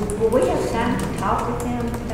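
Indistinct voices talking in a meeting room, with scattered clicks of laptop keys.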